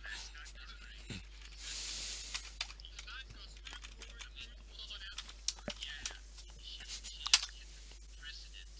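Faint, low speech over a voice call, with scattered clicks and a sharp click near the end.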